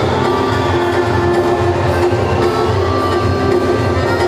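Live gaúcho folk music on accordion and guitars, playing a lively dance tune with a steady quick beat.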